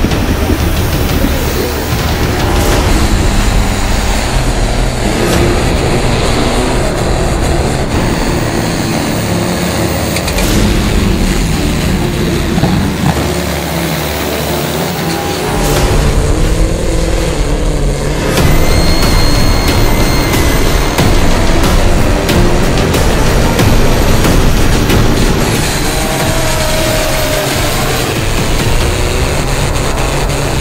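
Engines of pulling tractors and a pulling truck running at full power under load, mixed with background music; the sound shifts abruptly several times.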